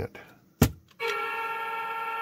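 A sharp click, then about a second in the hockey goal light's horn starts: a steady, many-toned horn blast that keeps sounding. The reassembled goal light still triggers after its modification.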